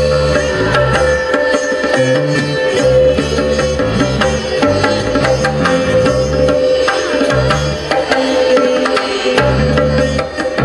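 Live rock band playing an instrumental passage with no singing: hand-drum strokes over a stepping bass line and a held drone note.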